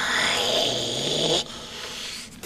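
Gollum's raspy, hissing throat noise with a low guttural rumble underneath, from the film soundtrack. It cuts off about one and a half seconds in.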